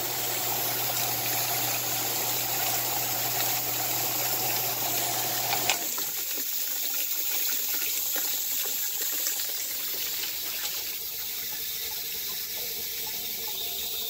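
Submersible sewage sump pump running in a bucket of blasting slurry, humming steadily while the water churns and splashes. About six seconds in the hum cuts off with a click, and the water keeps splashing and running more quietly.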